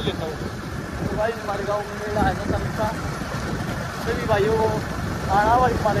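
A motor vehicle's engine and road noise running steadily under a man's voice, which talks in two stretches.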